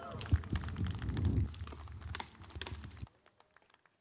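Mixed background noise: a low rumble with scattered short clicks and knocks, cutting off suddenly about three seconds in.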